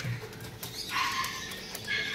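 Corgi puppies whining in short, thin, high whimpers, one about a second in and another near the end.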